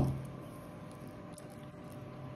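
Faint, soft handling clicks over quiet room tone: a baby monkey picking spaghetti out of a glass bowl with its hands.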